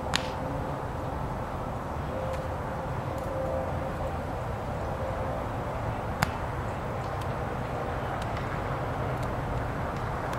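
A volleyball being hit by players' hands and arms: a sharp slap just after the start and another about six seconds in, with a few fainter ticks between, over a steady low background rumble.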